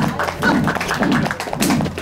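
Percussive music: a low drum beat about twice a second under a dense run of sharp taps and strikes.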